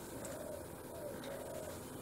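Quiet room tone with a dove cooing faintly in low notes.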